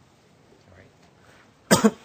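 A man's single short, sharp cough close to the microphone near the end, after a quiet pause with only faint room tone.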